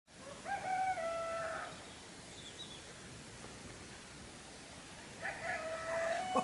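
A rooster crowing: one long crow about half a second in, and a second crow starting near the end.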